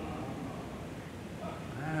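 A pause in a man's sermon: steady low room noise of a hall, with his voice starting again near the end.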